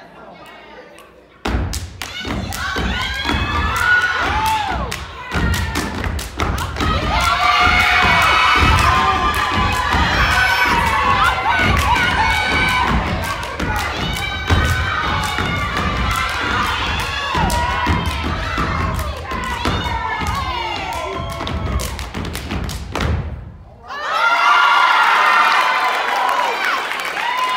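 Step team stomping and clapping in a fast, dense rhythm on a wooden stage, with a crowd cheering and shouting loudly over it. The stomping stops near the end, leaving only the cheering.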